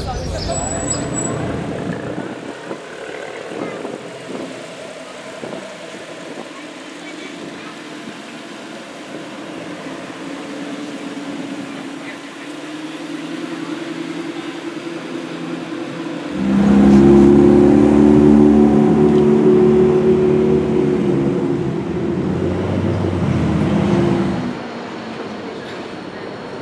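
Street noise with voices, then about two-thirds of the way in a sports car's engine comes in loud, running with a low, steady note for about eight seconds before cutting off abruptly.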